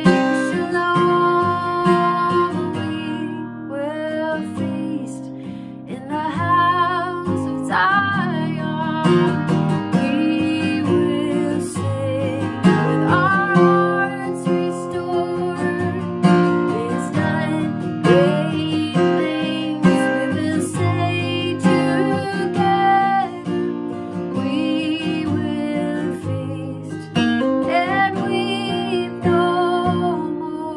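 A woman singing a song while strumming and picking a steel-string acoustic guitar.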